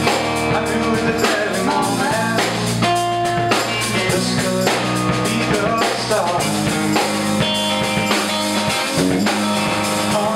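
Live band playing a song: guitar, bass guitar and drum kit, with steady drum hits and no vocal line heard.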